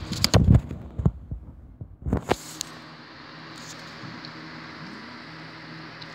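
Handling noise on the recording device: a cluster of low thumps and clicks in the first second, another sharp click about two seconds in, then a steady low hum.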